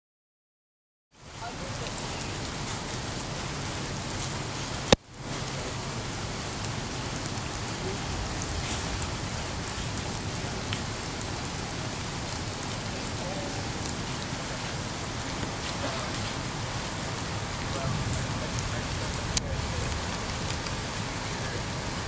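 Steady rain falling, an even hiss, starting about a second in. A sharp click and a momentary dropout come at about five seconds, with a smaller click later on.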